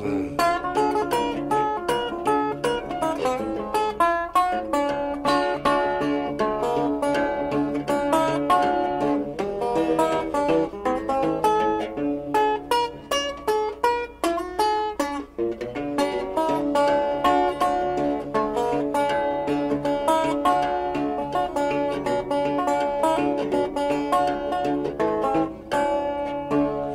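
Instrumental break of a country-blues song about going fishing, with plucked string instruments playing a fast run of quick notes and no singing.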